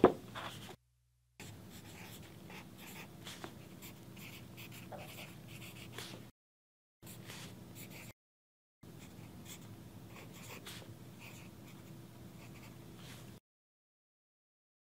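Pen scratching on notebook paper in quiet, short stretches of handwriting, broken by sudden drops to dead silence and cutting off shortly before the end. A sharp knock at the very start is the loudest sound.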